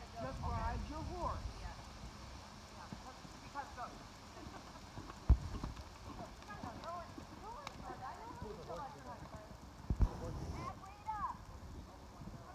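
Hoofbeats of a horse trotting on arena sand, with indistinct voices in the background. Two sharp thumps, about five seconds in and again near ten seconds, are the loudest sounds.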